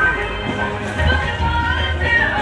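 Street brass band playing a tune, several horns carrying the melody over a low, steady bass.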